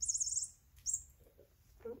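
High-pitched bird-like chirping: a quick warbling trill in the first half second, then one short chirp about a second in.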